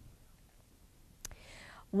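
Near silence for about a second, then a small click and a soft intake of breath lasting about half a second, just before a woman starts speaking.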